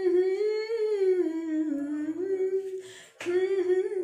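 A woman humming a melody unaccompanied, her voice gliding smoothly up and down between sustained notes, with a quick breath taken about three seconds in.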